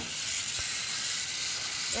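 Water spraying from a garden hose spray nozzle, a steady hiss.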